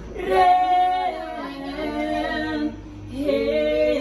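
Women singing a novena hymn in long held notes, two phrases with a short break about three seconds in.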